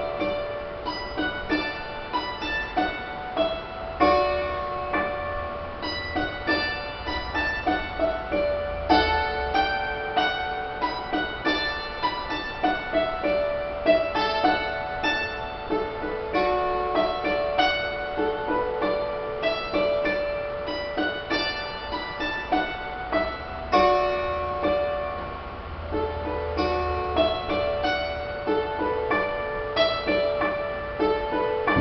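Dulcimer playing an instrumental tune, a steady run of struck notes that ring on over one another.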